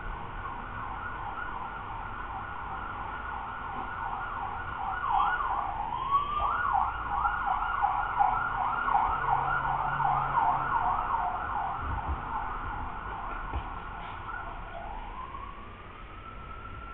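An ambulance siren passing by outside. It plays a fast yelp that rises and falls about three times a second and grows louder through the middle. Near the end it switches to a slow rising wail.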